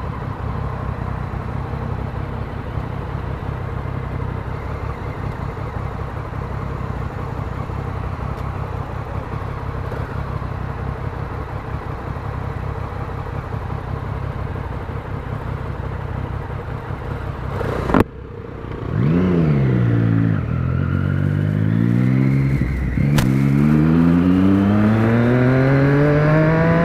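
Four-cylinder sport motorcycle idling steadily at a stop for about eighteen seconds, then pulling away: the engine revs up through the gears, its pitch climbing and dropping back at each of two shifts. A sharp click marks the pull-away.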